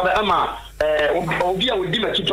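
A man speaking over a narrow phone-line connection, broadcast as a call-in on radio.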